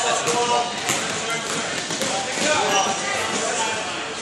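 Basketball bouncing on an indoor court during play, with a spectator shouting "go, go" at the start and other voices through it.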